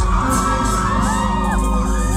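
Concert crowd whooping and screaming, several high voices gliding up and down, over steady held chords from the stage's music.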